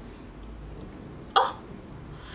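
Quiet room tone, broken about a second and a half in by one short, sharp vocal sound from a woman, like a hiccup or a scoff.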